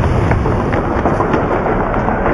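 Dense, loud action-film effects mix: a continuous rumbling crash with several sharp cracks of gunfire through it.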